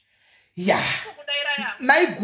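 A woman's voice: a loud, breathy outburst about half a second in, then speech.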